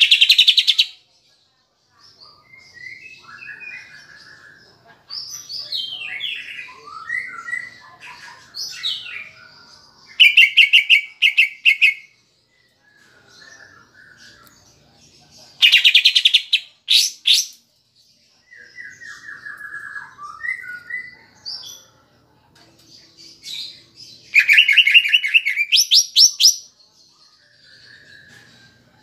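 Greater green leafbird (cucak ijo) singing: varied whistled and warbled phrases broken by four loud bursts of fast, evenly repeated notes, at the very start and about ten, sixteen and twenty-five seconds in. The song is loaded with mimicked 'kapas tembak' phrases.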